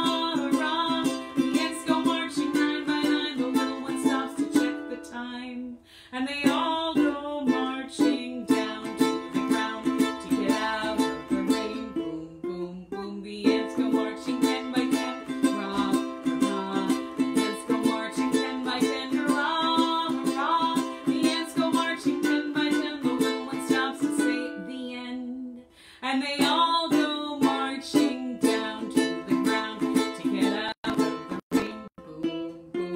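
A small stringed instrument strummed in a steady rhythm, playing chords with short breaks about six, thirteen and twenty-six seconds in.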